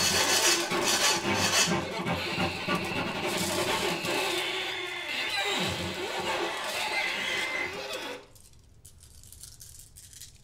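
Everyday kitchen objects played as musical instruments: glasses, bowls, bottles and utensils in a dense mix of rattling and clinking, with a few held tones. It stops abruptly about eight seconds in.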